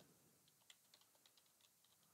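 Faint computer keyboard typing: a run of light, irregular key clicks as a short line of text is typed.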